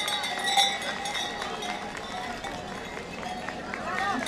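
Kukeri costume bells clanking and jingling irregularly as the costumed mummers move, over a murmur of crowd voices.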